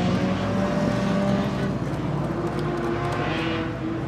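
Drift car engine held at high revs, a steady drone that wavers slightly in pitch.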